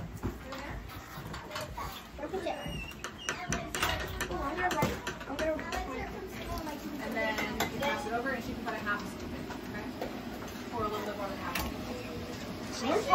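Indistinct talking from children and adults in a room, with scattered light clicks and clatter.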